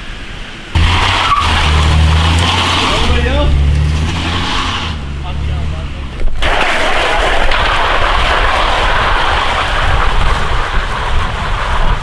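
A car climbing a steep, wet street, its engine revving as the tyres spin and skid on the slick pavement. It starts loudly about a second in and changes sharply around six seconds to a dense hiss of tyre and road noise.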